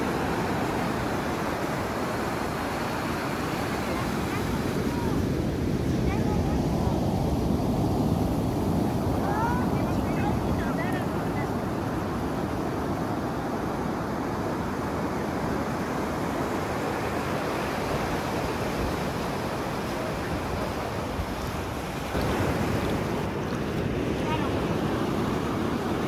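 Ocean surf washing up on a sandy beach: a steady rush of breaking waves and foam that swells about a third of the way in and then eases.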